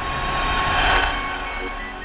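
A rushing whoosh that swells to a peak about a second in and then fades, marking a scene transition, over soft steady music tones.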